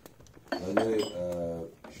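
A person's drawn-out voice, held for over a second, with a few light clinks of small cups on a tray.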